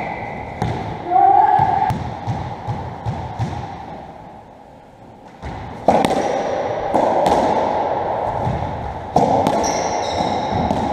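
A short voice call about a second in, then a lull. From about six seconds in a squash 57 (racketball) rally is under way: the ball is struck by rackets and hits the court walls in sharp, echoing cracks, with shoes squeaking on the wooden floor.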